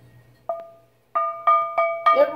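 Griswold No. 7 large-logo cast iron skillet tapped in a ring test: one tap about half a second in, then three quick taps, each giving a clear bell-like ring that dies away. The clean, sustained ring is the sign that the skillet has no cracks.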